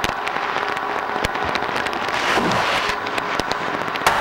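Steady underwater rushing noise scattered with many sharp crackling clicks, with one stronger knock about a second in. It is heard through a diver communication link at a wreck excavation.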